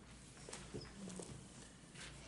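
Faint rustling and a few small clicks in a quiet room over a low hum: pages of a Bible being leafed through to find a passage.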